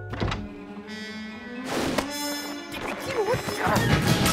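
Cartoon music score with slapstick sound effects: several sharp thunks and knocks during a scuffle, and short squealing voices near the end.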